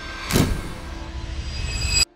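Logo-intro sound effects: a whoosh sweeping down in pitch about half a second in, then a swell that builds in loudness and cuts off suddenly at the end.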